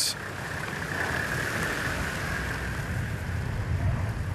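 Four-wheel-drive off-road vehicle driving past on a snow-covered track: its engine and tyres make a steady drone.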